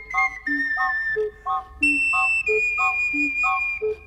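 Instrumental Western-style music: an ocarina holds long, high, pure notes over a steady bouncing accompaniment of alternating bass notes and short chords. The melody steps up to a higher note about two seconds in.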